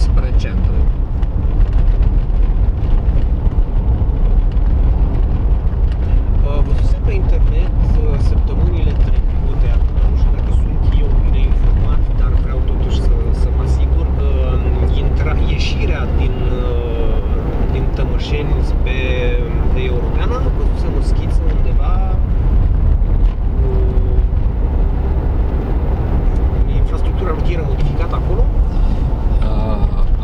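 Car cabin noise while driving slowly: a steady low engine and road rumble heard from inside the car.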